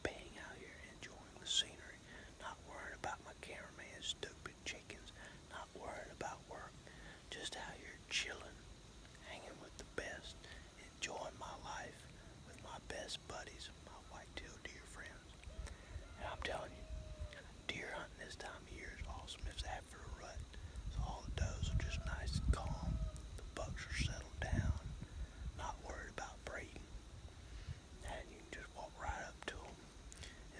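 A man talking in a whisper, with a low rumble coming up for a few seconds past the middle.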